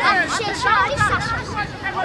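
Overlapping high-pitched voices shouting and calling, with sideline chatter mixed in: the babble of players and spectators at a children's football match, no single voice standing out.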